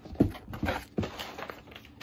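Cardboard shipping box and its packaging being handled: rustling with a few sharp taps and knocks, the loudest just after the start.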